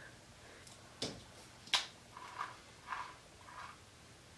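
Faint handling of a phone and a plastic drink bottle: two sharp clicks, then three or four short, soft sounds.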